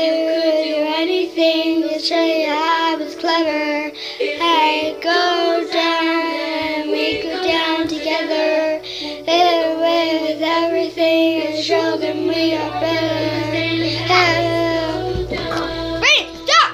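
A young girl singing a pop-style song solo, her voice wavering up and down in pitch, over steady sustained notes of backing music.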